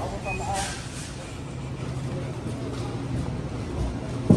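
Supermarket ambience: a steady low hum with faint background voices.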